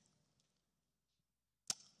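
Near silence, then a single sharp click about three-quarters of the way through, just before speech resumes.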